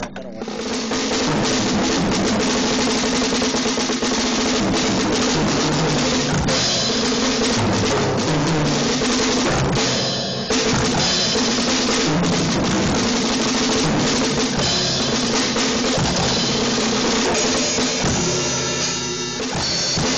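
Drum kit solo played with sticks: fast, dense snare rolls and bass drum hits that run on almost without a break, with a short pause about ten seconds in. The sound is a harsh, poor-quality recording.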